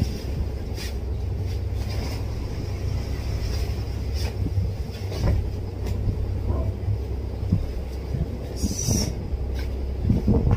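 Cloth rustling and handling noises as black fabric pants are turned over and shaken out, with a brief sharper swish just before the end, over a steady low rumble in the room.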